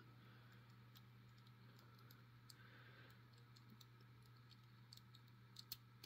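Near silence: faint small clicks of a TSA combination padlock's number wheels being turned by thumb, with a couple of slightly louder clicks near the end, over a faint steady hum.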